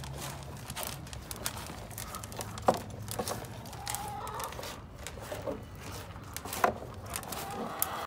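Jersey cattle eating grain from a plastic feed tub: irregular crunching and clicking. Two louder clicks come about a third of the way in and again near the end.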